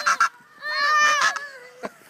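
Goose honking: one drawn-out call a little over half a second in, followed by a sharp click near the end.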